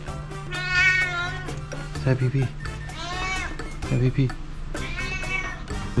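Domestic cat meowing three times, each meow drawn out and falling in pitch at the end, about two seconds apart, while it is being stroked.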